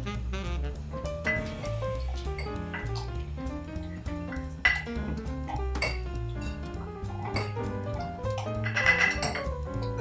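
Background music with a steady bass line, over which a muddler knocks and clinks against a glass a few times as lime and syrup are muddled in it.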